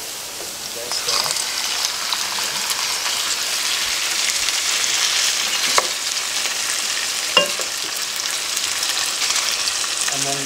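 Diced raw chicken sizzling in hot oil with onion and garlic, the sizzle growing louder about a second in as the pieces land in the pan. A wooden spatula stirs them, with two sharp knocks against the pan about a second and a half apart.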